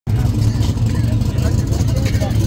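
Street drag cars' engines running with a loud, steady low rumble, with voices of the crowd in the background.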